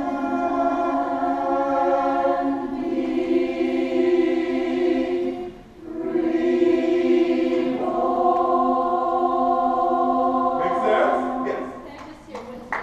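Community choir singing unaccompanied, holding long sustained chords in two phrases with a short break for breath about halfway through. The singing stops about a second before the end.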